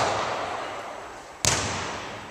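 A basketball hits a hard surface once, sharply, about a second and a half in, and the hit echoes round a large sports hall.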